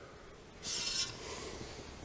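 Handling noise: a brief rubbing scrape, about half a second long, a little after the start, followed by a faint steady hiss.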